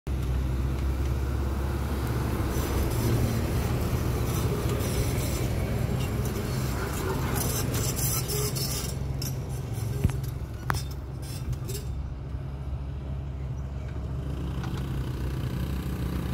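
Steady low engine hum and road noise of a slowly moving vehicle, with two sharp clicks about ten seconds in.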